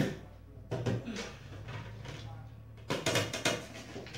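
Round aluminium cake pan being flipped over and set down upside down on a plate to turn out a chilled cake, with metal clatters and knocks. The clatters come about a second in and again around three seconds.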